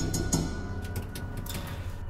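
Irregular sharp taps on a stove's metal flue pipe, made by a bird trapped in the chimney, over a steady background music bed.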